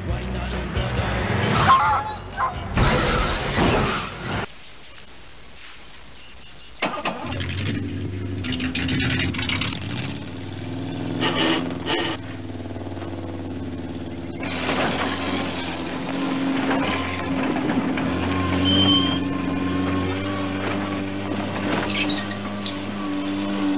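Film soundtrack of music mixed with car and engine sound. About four seconds in it drops to a low, even hum for two seconds, then music with a steady drone picks up and runs on.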